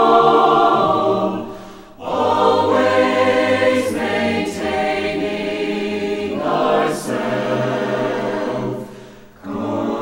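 Choir singing a religious song in long held chords. The sound dips for a breath between phrases about two seconds in and again just before the end, each time followed by a new phrase.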